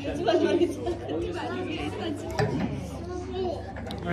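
Indistinct voices of several people talking at once in a busy room, over a steady low hum.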